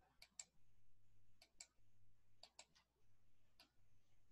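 Near silence with faint sharp clicks, mostly in close pairs, coming about once a second.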